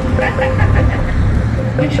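Steady low rumble of road traffic on a city street, with voices talking over it.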